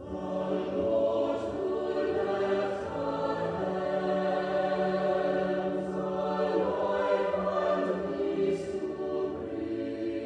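A choir singing a slow hymn in long, held notes, a new phrase starting at once after a moment of quiet.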